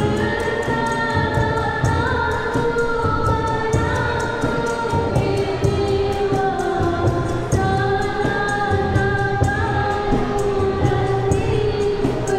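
Johor ghazal performed live: female voices sing long, slowly wavering held notes, accompanied by harmonium, violin and a steady tabla beat.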